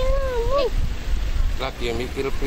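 A high, drawn-out voice, wavering in pitch, that ends less than a second in over a steady low rumble; other short voices start near the end.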